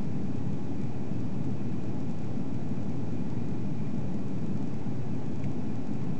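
Steady low rumble of an Airbus A340-300 in flight, heard inside the cabin: its CFM56-5C engines and the airflow past the fuselage, with a faint steady whine above the rumble.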